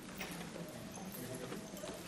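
Faint room noise of a seated congregation, with a few light knocks and rustles.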